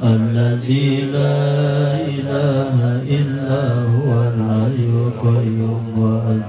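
A man chanting an Arabic prayer into a microphone, drawing out long held notes.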